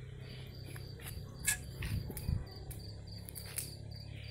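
Crickets chirping in a steady, even pulse, over a low hum, with a few sharp clicks; the loudest click comes about a second and a half in.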